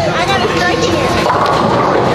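Busy bowling-alley din: overlapping voices and chatter echoing in a large hall, with scattered knocks.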